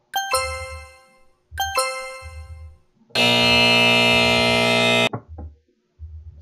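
Two ringing electronic chime tones about a second and a half apart, then a loud, steady electronic buzzer sounding for about two seconds and cutting off suddenly: a slide timer's sound effects signalling that the time is up.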